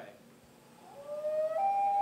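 A common loon's wail, played as a recorded sound effect: one long call that begins about a second in, rises in pitch and then holds steady.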